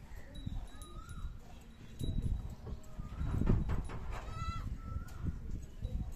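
Goat bleating in short calls, about a second in and again near the end, the fullest call coming a little after four seconds.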